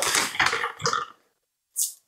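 Plastic bag rustling and dry rolled oats being scooped with a plastic measuring cup and poured into a blender jar, cutting off suddenly about a second in; a short hiss near the end.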